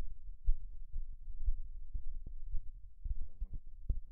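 Low, irregular thumps over a rumble: handling noise on the phone's microphone as the phone is held and its screen tapped.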